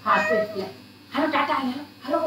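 A baby fussing: two short whiny cries, one at the start and a second just after the middle.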